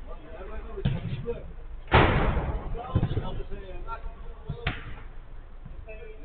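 Three sharp thuds of a football in play, the loudest about two seconds in with a short ring after it.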